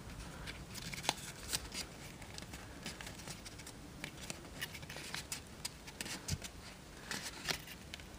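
Faint, scattered crinkles and small clicks of 20-pound printer paper being pressed and pushed into folds by fingertips.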